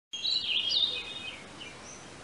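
A songbird singing a quick warbling, gliding phrase through the first second and a half, then one faint short chirp, over a low steady outdoor hiss.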